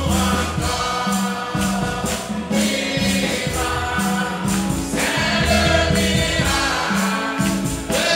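Church congregation singing a French hymn with instrumental accompaniment, over a steady bass and an even percussion beat.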